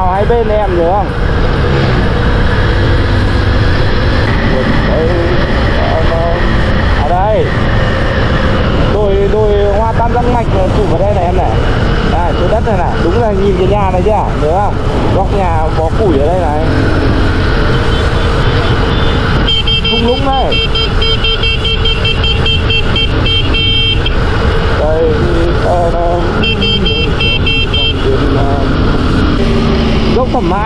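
Motorcycle riding on a mountain road, with steady wind rush over the microphone and engine noise. Indistinct voices come through on and off. A high, pulsing buzz sounds twice in the second half, once for about four seconds and once more briefly.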